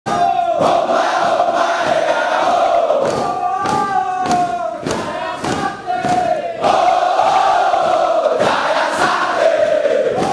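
A body of soldiers shouting a battle chant in unison, long held calls with rhythmic thumps about twice a second beneath them.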